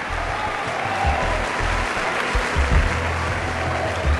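Large audience applauding over background music with a low bass.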